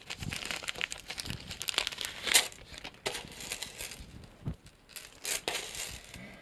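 Plastic bags and postal packaging crinkling and rustling as they are handled, in irregular bursts, loudest about two seconds in and again around five seconds in.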